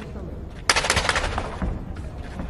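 The timekeeper's ten-second warning: a clapper struck rapidly, a burst of quick, loud knocks that starts suddenly less than a second in and fades after about a second, signalling ten seconds left in the round.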